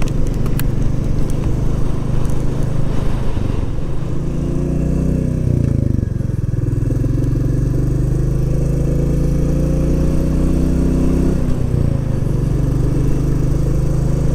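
Royal Enfield Classic 350's single-cylinder engine running under way. Its note climbs and then drops away about six seconds in and again about eleven and a half seconds in, as it changes gear.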